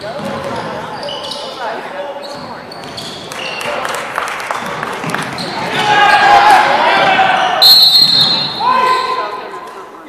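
Basketball game in a gym: spectators shouting and cheering over the ball bouncing on the hardwood court and short sneaker squeaks, with the crowd noise swelling to its loudest in the second half. A short, shrill referee's whistle blows about eight seconds in, stopping play.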